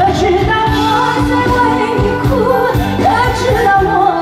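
A woman singing a Chinese pop song live into a handheld microphone, holding wavering notes, over backing music with a steady beat.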